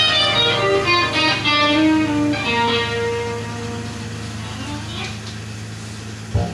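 Electric guitar played through an amplifier, with a man's voice along with it; the playing dies away after about three seconds, leaving a steady low hum.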